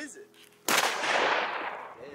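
A single shotgun shot about two-thirds of a second in, fired at a goose over the decoys. The report starts suddenly and dies away over about a second.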